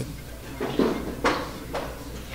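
A pool shot: a few sharp clicks of cue tip and billiard balls striking one another, the loudest about a second in, as an object ball is played into a pocket.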